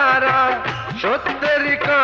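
Bangla film song: a man singing a long wavering note over instrumental accompaniment, with a quick upward slide about a second in.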